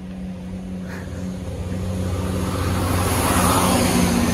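ScotRail diesel passenger train coming up and passing close by on the track: a steady low engine hum under rumbling wheel and rail noise that grows steadily louder.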